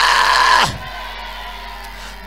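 A long held shout, strongest in the first half-second, then it breaks off and leaves soft background music with faint voices.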